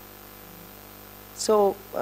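Low, steady electrical mains hum on the recording during a pause in speech; a voice briefly says "so" near the end.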